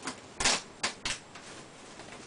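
Woven plastic sack crinkling as gloved hands grip and pull at its mouth: a few short, sharp rustles, the loudest about half a second in, then two more close together near the one-second mark.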